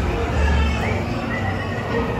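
The dark ride's show soundtrack: a dense mix of effects with a low rumble that swells near the start, and a short rising, then held, high animal-like cry around the middle.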